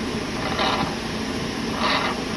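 Engine of a large bus-type vehicle running steadily while it creeps along, heard inside the cab, with two short hissy bursts about half a second in and near the end.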